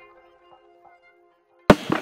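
The last held notes of a channel intro jingle fading out, then near silence, broken near the end by one sharp click as the interview sound cuts in.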